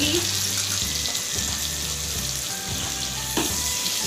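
Butter sizzling in hot oil in a nonstick wok as it starts to melt: a steady hiss that comes in suddenly at the start. A single knock near the end.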